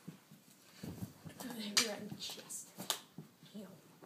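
Two sharp clicks about a second apart, near the middle: a plastic mini hockey stick hitting a small plastic ball in a knee-hockey game. Faint, low voices murmur underneath.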